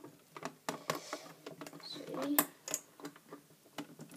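Small irregular clicks and taps of a plastic crochet hook against the plastic pegs of a rubber-band loom as loom bands are hooked over them, the sharpest click about halfway through. A short murmur of a voice comes just before it.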